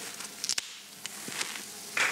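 Pull tab of a shaken aluminium drink can being lifted: a sharp crack with a brief hiss of escaping gas about half a second in, then a faint click.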